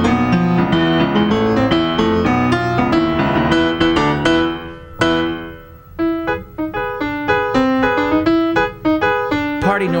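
Electronic keyboard with a piano sound playing an instrumental break: dense, busy chords up to a single hard-struck chord about halfway that rings down into a short gap, then lighter, spaced-out notes.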